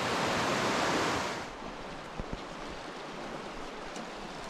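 Steady rushing noise of the river flowing below, dropping to a lower, even hiss about a second and a half in, with a couple of faint clicks a little past the middle.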